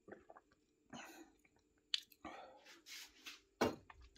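Faint mouth sounds of a man drinking a shot of spirit: sipping and swallowing, then a breathy exhale near the end.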